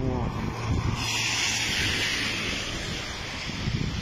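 Wind buffeting a phone microphone in a rainstorm, with a loud hiss of rain and water on wet pavement that sets in about a second in and eases near the end.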